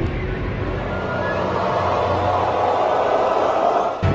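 Advert soundtrack: a hissy, swelling whoosh-like sound effect without clear notes, building over a few seconds and cutting off suddenly at the end.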